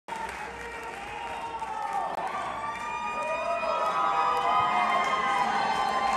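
Electric guitar notes held and bent slowly up and down in pitch, growing gradually louder, over a crowd's murmur.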